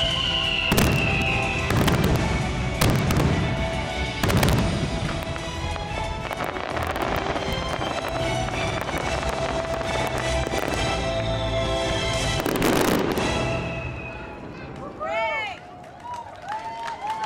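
Fireworks going off over orchestral show music, with several loud bangs in the first five seconds and another about thirteen seconds in. The bangs and music fade near the end.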